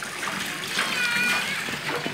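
Water running into a household water tank (caixa d'água) that is still filling, a steady rushing splash. A faint, high, distant voice comes in briefly about a second in.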